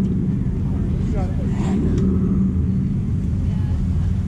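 Steady low rumble with faint distant voices now and then.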